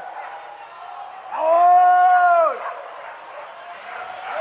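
A hunting dog howling: one long, level-pitched howl of about a second near the middle, rising in at the start and dropping away at the end.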